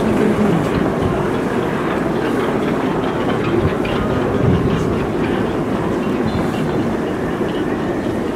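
Stadium crowd in the stands making a steady din of many voices while a penalty kick is set up in a shootout.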